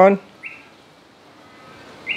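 A single short, high chirp from a bird, about half a second in, over faint room hiss.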